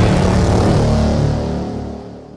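Logo sting of a TV station ident: a low sustained chord under a rushing swell, beginning to fade out near the end.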